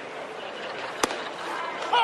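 Ballpark crowd murmur, with a single sharp pop about a second in as the pitch smacks into the catcher's mitt for a called strike.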